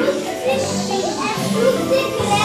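Music with long held notes, mixed with children's excited voices and chatter.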